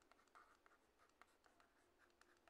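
Near silence with faint, scattered ticks and light scratches of a stylus writing by hand on a digital pen tablet.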